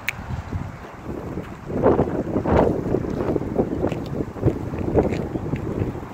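Wind buffeting the phone's microphone: an uneven, gusty rumble that swells about two seconds in and eases off near the end.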